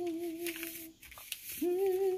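A woman humming a tune in long held notes. The first note ends about a second in, and after a short pause a slightly higher note begins and is held.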